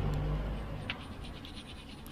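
Faint scratching of a small stiff brush scrubbing a grimy brake caliper, a few short strokes that grow quieter.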